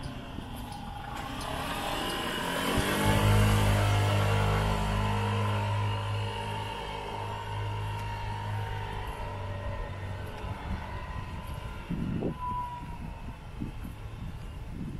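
A motor vehicle passing unseen nearby. Its low engine hum swells to its loudest about three seconds in, with a falling pitch as it comes closest, then fades away over the next several seconds.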